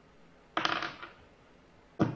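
A d20 rolled onto a table for an attack roll: a short clatter of clicks about half a second in, dying away within half a second.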